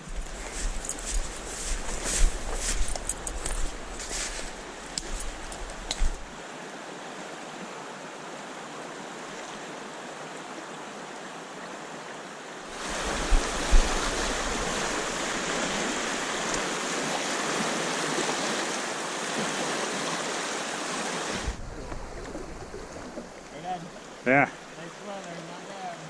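Steady rush of water from a fast-flowing stream riffle, heard in several takes that change abruptly, loudest through the middle. Low wind rumble on the microphone and a few knocks in the first few seconds.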